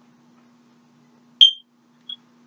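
A single short, high electronic beep about one and a half seconds in, over a faint steady hum.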